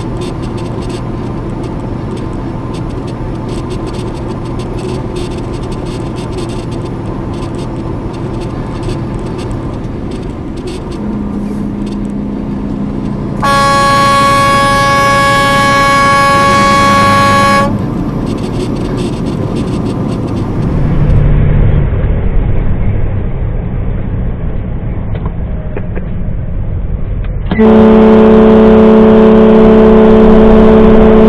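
Steady engine and road noise inside a truck cab, then a loud horn blast held for about four seconds midway. Near the end another loud, lower-pitched horn sounds.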